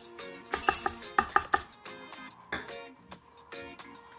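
Crushed ice dropping into a blender jar: a quick run of sharp clinks about half a second to a second and a half in, and a few more later, over background music.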